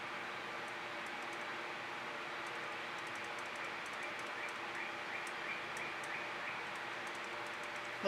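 Steady background hum and hiss, with a faint run of quick high chirps in the middle.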